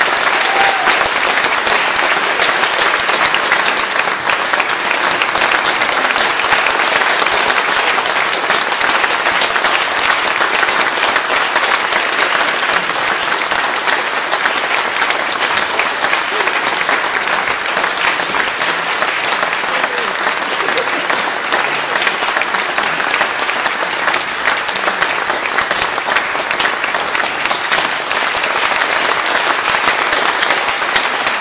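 Audience applauding steadily in a church, a dense wash of many hands clapping with no let-up.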